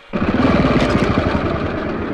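Motorcycle engine running loud with a rapid, rough firing beat, cutting in suddenly a moment after the start.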